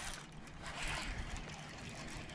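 Faint splashing of a small hooked bass at the water's surface as it is reeled in toward the bank, with a slight swell about a second in.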